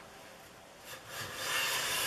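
Stanley Bedrock 605 jack plane cutting a shaving along the edge of a poplar board: after a quiet start, a rasping hiss of the blade and sole on the wood builds up about two-thirds of the way in as a stroke begins.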